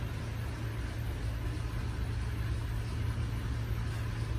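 A steady low hum with a rumble underneath and a faint hiss, unchanging throughout.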